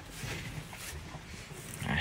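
Cattle eating from a wooden feed trough, heard faintly.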